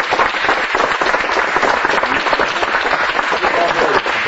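A group of people applauding, a dense patter of many hands clapping, with voices mixed in.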